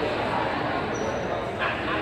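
Indistinct chatter of many voices echoing in a gymnasium. A short, sharp, high sound comes about one and a half seconds in.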